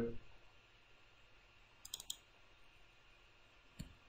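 Computer mouse clicks while picking and opening a file: a quick run of three about two seconds in, then a single click near the end, against near silence.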